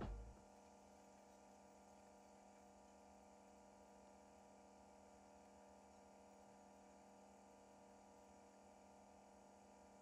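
Near silence with a faint steady hum, after the last of the outro music dies away in the first half-second.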